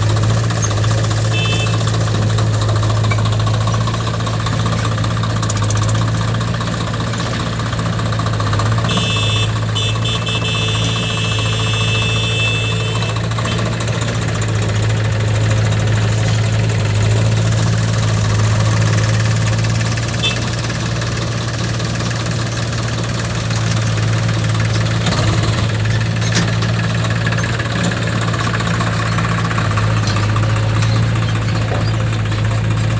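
Swaraj 744 FE tractor's three-cylinder diesel engine running steadily with a low hum and diesel clatter. A high-pitched whine joins in for about four seconds, starting about nine seconds in.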